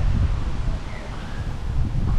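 Wind buffeting the microphone in a steady low rumble, with palm fronds rustling in the breeze.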